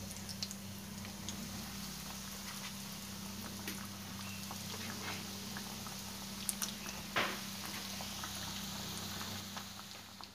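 Breaded bread samosas deep-frying in hot oil in a frying pan: a steady, fairly quiet sizzle with scattered small pops and crackles, a couple of louder pops about six to seven seconds in. A low steady hum runs underneath.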